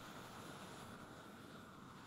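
Near silence: a faint, steady hiss of background noise.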